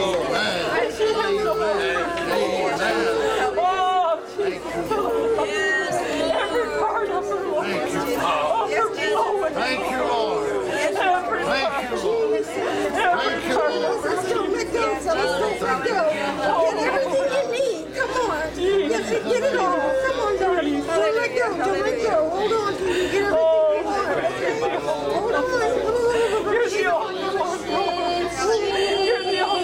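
A congregation's many voices praying aloud at once, overlapping into a steady babble with no single voice standing out.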